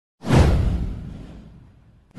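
A whoosh sound effect from an animated intro: one sudden swell about a quarter second in, with a deep low rumble, that sweeps downward and fades away over about a second and a half.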